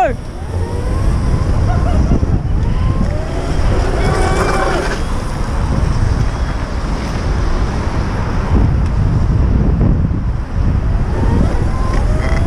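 Wind buffeting the microphone on a moving electric dirt bike, a steady low rumble, with the motor's faint rising whine as the bike accelerates several times. A brief shout is heard about four seconds in.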